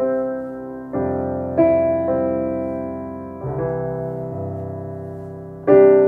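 Yamaha AvantGrand N1X hybrid digital piano played slowly: sustained chords struck roughly once a second, each ringing on and fading before the next, with the loudest chord near the end.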